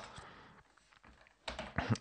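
Computer keyboard being typed on: a few quick key clicks near the end after a short quiet spell.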